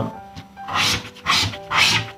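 A scratch-off lottery ticket's coating being scraped with a handheld scratching tool: three rasping strokes about half a second apart, starting near the middle, over background music.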